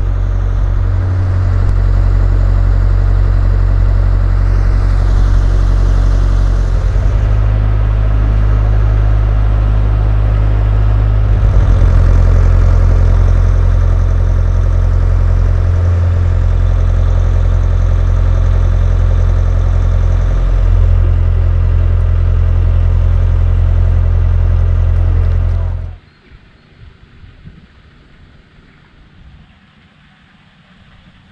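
Narrowboat's diesel engine running steadily at cruising speed, a loud low hum. It cuts off suddenly about four seconds before the end, leaving only faint outdoor sound.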